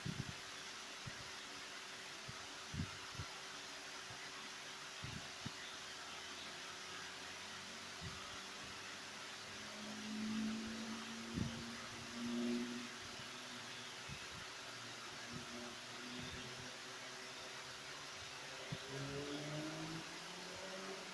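Steady low hiss of room noise, with a few faint soft knocks scattered through it and a brief faint low hum twice around the middle.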